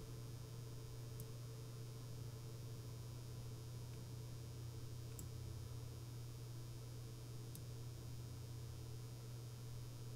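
Faint room tone with a steady low hum and a few brief, faint high ticks.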